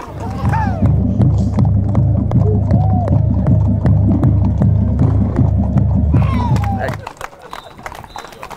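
Horses' hooves clopping on asphalt, heard from a camera riding on a horse, over a heavy low rumble of wind and movement on the microphone. The rumble cuts off about a second before the end.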